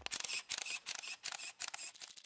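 Camera-shutter clicks firing in quick succession, used as a photo-flash sound effect for a transition.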